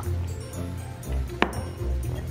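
Background music with steady bass. About one and a half seconds in comes a single sharp clink: an emptied drinking glass set down on a wooden table.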